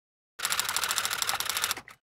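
Typewriter sound effect: a fast, even clatter of keystrokes that starts about half a second in and stops near the end, with one last short click.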